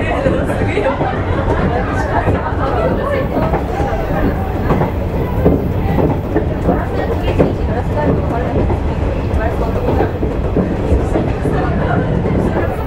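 Electric train running along the line, heard from inside the car behind the cab, with a steady rumble of running noise and scattered knocks from the wheels over the track. Indistinct voices of people talking in the car run underneath.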